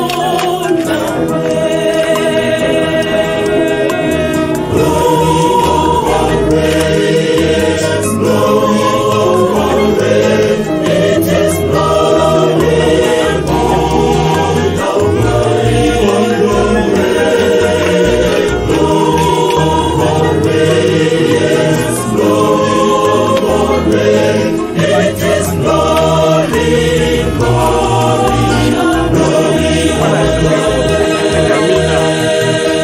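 A choir singing a gospel song, many voices together, running without a break.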